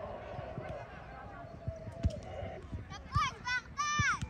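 Children's high-pitched shouts from the pitch in the last second or so, with a couple of dull thuds of a football being kicked on the turf about two and three seconds in.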